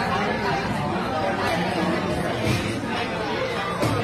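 Indistinct chatter of several people in a bar, steady throughout, with one sharp click just before the end.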